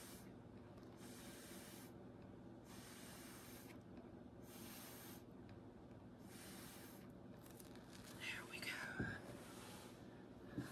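Breath blown through a drinking straw in about five faint puffs, each about a second long, air hissing out onto wet acrylic paint to push it into petals. Near the end, a short squeaky sound and a single knock.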